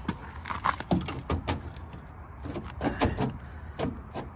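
A hand working a loose, damaged piece of body trim at the edge of a car's wheel arch, making an irregular run of clicks, knocks and rattles.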